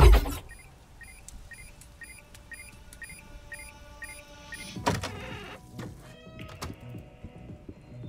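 An animated show's soundtrack: a quick run of repeated electronic blips, about three a second, then a sharp hit about five seconds in, followed by faint held tones.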